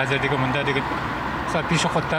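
Street noise with motor vehicles running, and indistinct talk close by.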